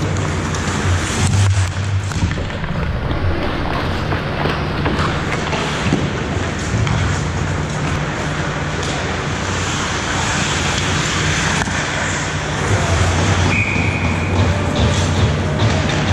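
Ice hockey play at the rink: skates scraping the ice and stick and puck clicks over a steady low hum. A short whistle blast near the end stops play.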